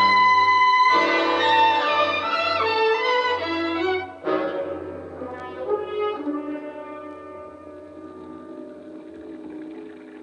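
Orchestral music bridge led by brass, with French horn prominent: a loud sustained phrase, then a new chord just after four seconds that fades gradually down.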